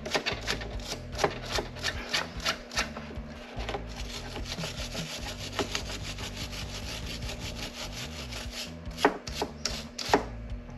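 Ratchet wrench clicking in repeated short strokes as a battery side-post cable bolt is tightened. It gives a run of separate clicks at first, a denser run of quick clicks through the middle, and two sharper clicks near the end.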